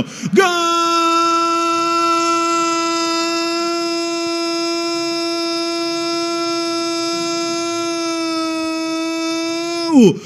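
A football commentator's long, held goal cry, "Gooool!", one steady high note lasting about nine seconds that drops in pitch near the end.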